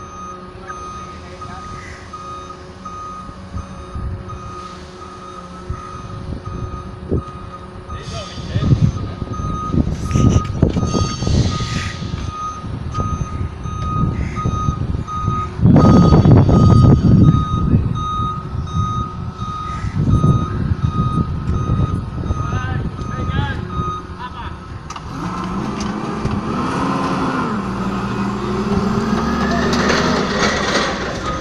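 Hyster forklift reversing: its back-up alarm beeps in an even, steady run over the running engine, and the engine noise swells loudly about halfway through as the truck pulls away. The beeping stops shortly before the end.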